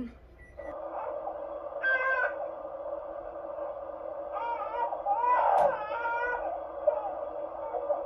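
A steady hiss, with faint pitched voice sounds over it about two seconds in and again from about four and a half to six and a half seconds in.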